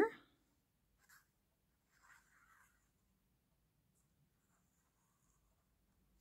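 Very quiet, with a faint short scratch about a second in and a soft paper rustle around two seconds in, from a fine-tip glue bottle being run along the edge of a paper pocket.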